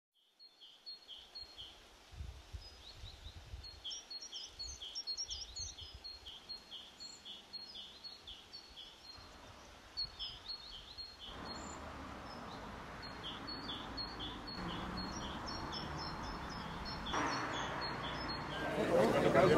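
Small birds chirping outdoors: a long run of short, high repeated calls over a low rumble. A steady background noise comes in about two-thirds of the way through and grows louder near the end.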